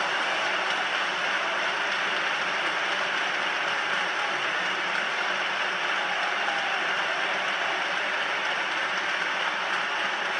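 Concert audience applauding steadily, a dense unbroken clapping right after the orchestral music ends.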